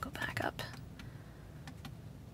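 Soft plastic clicks of the steering-wheel display control switch being pressed: one at the start and two close together near the end.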